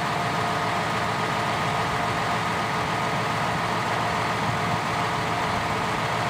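John Deere 6150R tractor's six-cylinder diesel idling steadily, the engine still cold, with a steady whine over the engine note.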